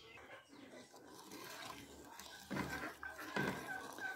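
Faint sounds of a wooden spoon stirring hot sugar syrup in an aluminium pan, with two louder scrapes about two and a half and three and a half seconds in.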